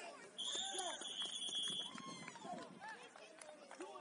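A referee's whistle blown once, a single steady blast about a second and a half long, ending the play. Voices from the sideline and stands carry on around it.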